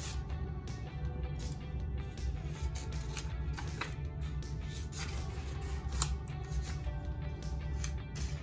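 Background music, over which scissors snip construction paper and the paper rustles as it is handled. A few snips stand out sharply, about three, four and six seconds in.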